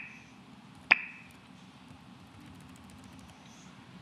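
Two short pops with a brief ring, one right at the start and one about a second in: a Mac laptop's volume-key feedback sound as the sound is turned down. Then faint steady room noise.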